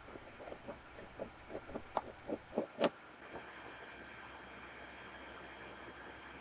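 Small clicks and taps of hands working a rubber fuel line and its retainer clip onto a motorcycle fuel petcock, with the loudest sharp click about halfway through. After that, only a faint steady hum.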